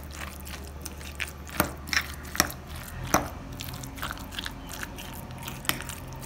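A fork mixing and mashing guacamole in a glass bowl: wet squishing with irregular sharp clicks as the fork works through the mix.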